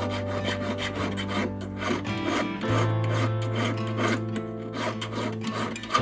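Needle file rasping back and forth on the inside of a gold ring's shank, about three to four quick strokes a second, over background music.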